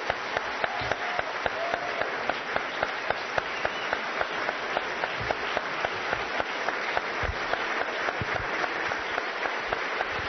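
Sustained applause from a large audience in a hall, steady throughout. One nearby pair of hands claps sharply and evenly about three times a second above the rest.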